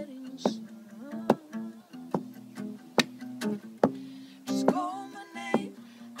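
Acoustic guitar playing steady held chords, with sharp percussive hits on the beat about every 0.8 seconds. A short sung phrase comes in about two-thirds of the way through.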